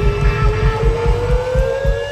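Live rock band playing: drums beating about four times a second under one long held note that slides slowly upward in pitch.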